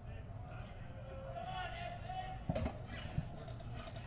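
Faint ballpark background: distant voices, with a few sharp knocks about halfway through.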